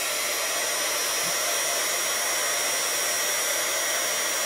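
Handheld craft heat tool blowing hot air steadily, a rush of air with a thin high whine above it, as it heats plastic shrink tubing on a ribbon lace end.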